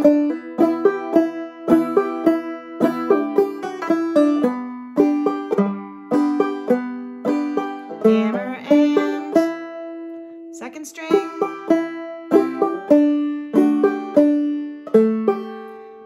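Open-back banjo played clawhammer style, picking a slow melody line note by note. The notes ring and fade, with hammer-ons on the third string, and one note is left ringing briefly about two-thirds of the way through.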